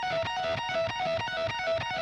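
Electric guitar playing a rapid repeating lick: pull-offs from the 18th to the 14th fret on the high E string, then over to the 17th fret on the B string, again and again.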